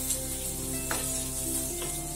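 Sliced onions sizzling in a little oil on a tava, stirred with a wooden spatula that gives a couple of faint scrapes against the pan.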